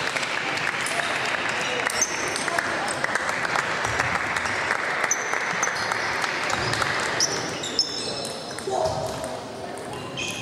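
Table tennis play in a large hall: the ball clicking off bats and table in quick strokes, with short high squeaks of shoes on the floor, over a steady murmur of voices.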